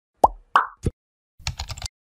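Animated-intro sound effects: three quick cartoon pops about a third of a second apart, two of them dropping in pitch, then half a second of rapid keyboard-typing clicks.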